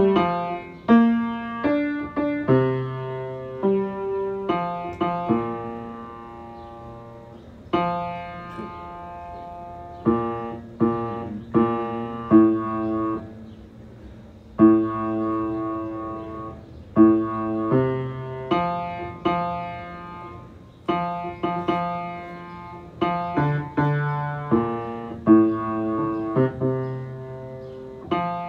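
Piano playing a slow hymn tune in struck notes and chords, each note fading after it is struck, with the low part clearly sounding beneath.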